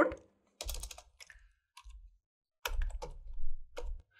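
Key presses on a computer keyboard typing a short word, in a few quick clusters of clicks separated by pauses.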